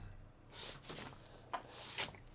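A few faint, brief rubbing noises: one about half a second in, a short tick, and another near the end.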